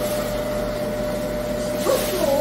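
Electric food grinder (mincer) running steadily with a constant whine and low hum while grinding pears, apples and radish.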